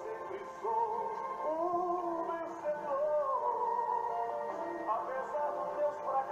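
Brazilian gospel song (louvor) playing: a male voice sings long, held notes over a steady instrumental backing.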